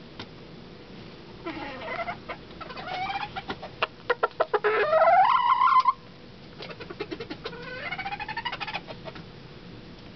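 Bantam rooster crowing close to the microphone. Rising calls build to the loudest, which ends in a long held note that cuts off sharply about six seconds in. Another rising crow follows from about seven to nine seconds, with quick sharp ticks between the calls.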